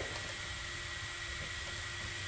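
Byroras BE100 diode laser engraver running over cardboard: a steady whir with a thin, high, constant whine.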